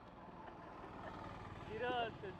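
Faint roadside traffic noise that grows slightly louder, with a distant voice near the end.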